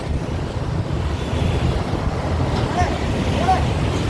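Steady low rumble of outdoor street background noise, with faint voices about three seconds in.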